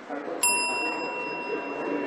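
A bell is struck once about half a second in and rings on with a clear, high, steady tone as the legislative session is adjourned, over a low murmur of voices in the chamber.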